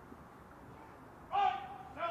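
A shouted military drill command on the parade ground: a sudden, loud, drawn-out call on one held pitch, starting about a second and a half in.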